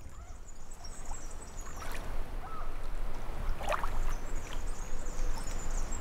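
Outdoor ambience by a lake: a steady low wind rumble with faint, scattered high chirps and one short call about two thirds of the way through.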